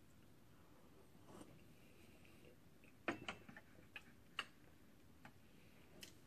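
Near silence while tea is tasted from a small porcelain cup, with a faint sip and then a few soft, short clicks about halfway through as the cup is handled and set back down on the wooden tea tray.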